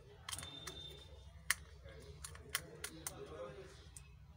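Irregular sharp clicks and taps, about half a dozen, from a disassembled Xiaomi Redmi 6A being handled and worked apart; the loudest click comes about one and a half seconds in. A steady low hum lies underneath.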